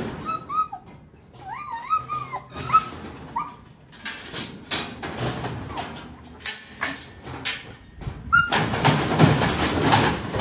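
A blue heeler whining in short, rising and falling whimpers over the first few seconds. Then metal clanks and rattles from a steel squeeze chute, growing into a louder stretch of clatter near the end as a bison calf is caught in the headgate.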